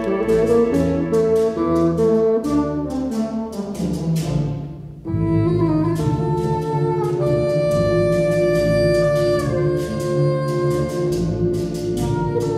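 Wind ensemble with solo bassoon playing a Puerto Rican danza in a rhythmic, lilting pulse. About five seconds in the sound briefly thins and drops, then the band comes back in with long held notes.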